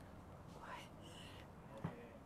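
Faint, soft speech close to a whisper, with a single short click near the end.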